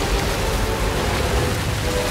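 Water rushing and splashing into a stone tomb chamber as a steady noisy wash, with a held note of film score faintly underneath.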